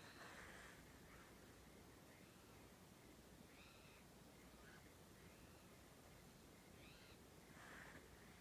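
Near silence, with several faint, short bird calls spread a few seconds apart.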